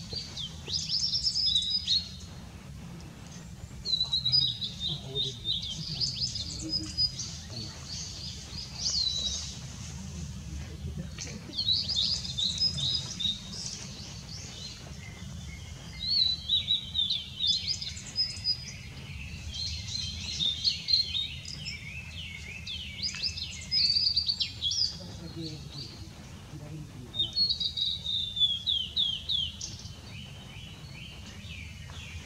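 Male blue-and-white flycatcher singing: a series of about eight high phrases of slurred, falling whistles that run into quick trilled notes, each phrase a couple of seconds long with short pauses between. A steady low rumble sits under the song.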